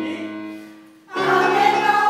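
An electronic keyboard chord dies away, then about a second in the choir comes in together on a loud held chord.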